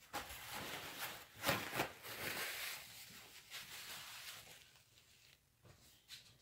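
Hands being wiped clean: soft rustling and rubbing through the first half, with two short sharp ticks about a second and a half in, then dying down.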